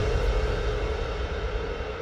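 Low, dark suspense drone with a rumble underneath, slowly fading away.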